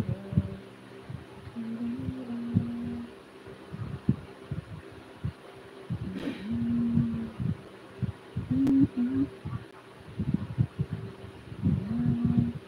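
A person humming a slow tune in held notes, each about a second long, broken by short low knocks and taps.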